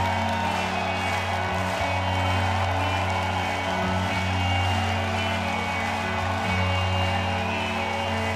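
Live band playing an instrumental passage of a pop-rock song: sustained chords over a steady held low bass note, with no vocals.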